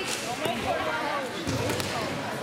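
A judoka thrown onto the mat lands with a dull thud about one and a half seconds in, while people nearby shout.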